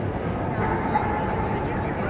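A dog barks briefly about a second in, over the steady hubbub of voices in a large hall.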